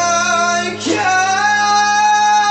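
A man singing long, high held notes without clear words, accompanied by acoustic guitar. There is a short break in the voice just before a second in, then he holds the next note.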